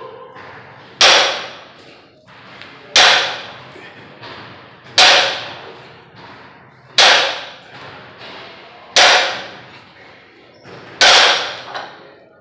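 A 315 lb loaded barbell set down on a rubber gym floor between deadlift reps, one sharp thud every two seconds, six in all, each with a short metallic ring and rattle from the plates and bar.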